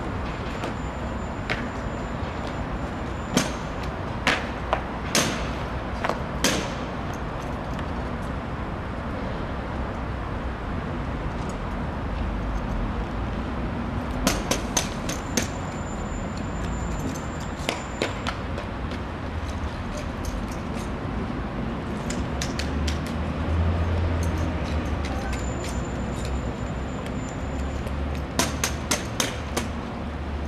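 Sharp clicks and slaps of an honour guard's rifle drill and boot heels striking stone paving, coming in several short clusters of quick strokes. They sound over a steady low rumble of city traffic.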